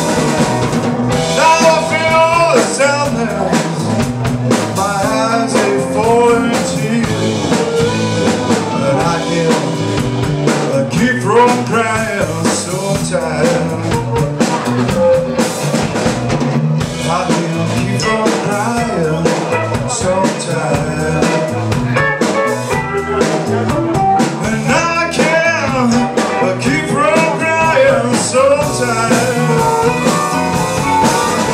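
Live blues band playing an instrumental break: an amplified harmonica soloing with bending, sliding notes over electric guitar and drum kit.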